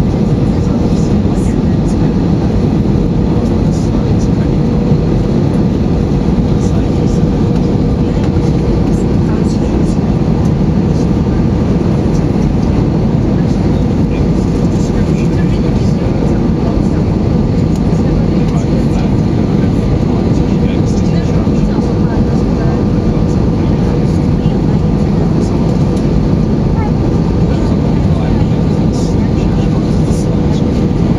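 Airbus A320-200 cabin noise on approach with flaps extended: a loud, steady rumble of the engines and rushing air, with a steady hum running over it.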